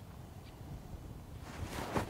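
Wind buffeting the microphone, then near the end the rising swish of a golf iron on the downswing, just before the club strikes the ball.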